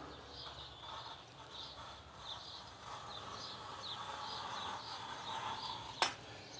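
A small bird chirping over and over, about two short high chirps a second. In the second half a faint steady scraping runs underneath as a small hand plane shaves paint off the wooden door jamb.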